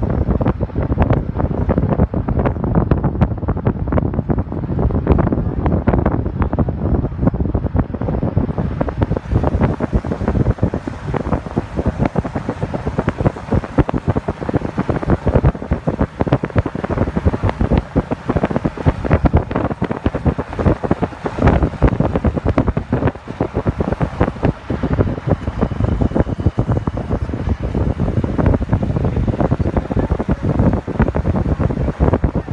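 Wind buffeting the microphone of a phone filming from a moving car, a loud steady rumbling rush mixed with road noise.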